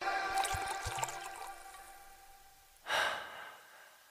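A background song cuts out, and its last held notes fade away over about two seconds. About three seconds in comes a single short rush of noise, then near silence.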